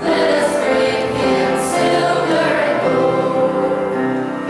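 A youth choir of mixed voices singing a Christmas song together, coming in louder right at the start.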